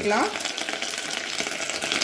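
Sliced onions frying in hot oil in a steel electric cooking kettle: a steady, dense crackling sizzle.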